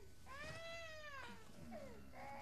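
An infant crying: one long, faint wail that rises and then falls in pitch, followed by a short falling whimper near the end.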